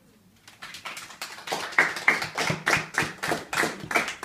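Small audience applauding, starting about half a second in, with loud, close claps at about three a second over fainter clapping.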